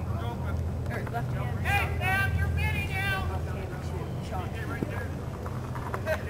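Shouting voices on a lacrosse field, players and onlookers calling out, with a cluster of high calls about two to three seconds in, over a steady low rumble.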